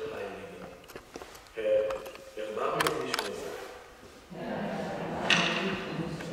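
A man's voice speaking the liturgy of the Mass in phrases with short pauses, in a church with some reverberation.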